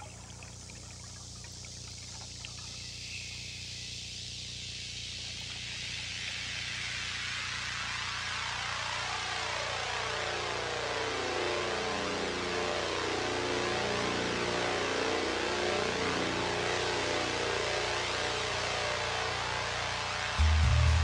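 Ambient electronic music intro: a steady low drone under a watery hiss that swells slowly and fills in from the treble downward, growing louder throughout.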